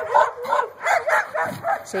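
A dog making a quick run of short, high yips, about three or four a second: an excited dog vocalising while it is made to hold back from food.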